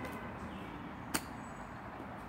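A single sharp click about a second in: a putter striking a golf ball, over faint steady outdoor background noise.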